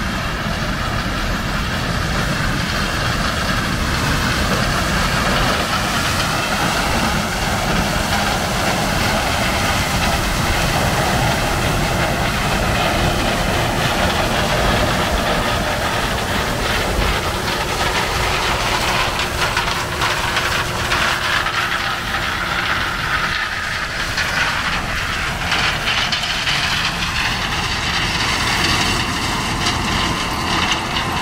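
John Deere 9400 combine harvesting corn: its diesel engine and threshing machinery run steadily, with a wavering high whine over the noise, as it passes close by.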